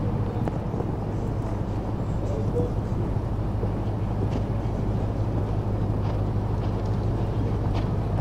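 Steady low rumble of outdoor background noise with faint, indistinct voices in the distance.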